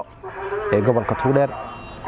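A man speaking in a level, conversational voice, with brief pauses near the start and near the end.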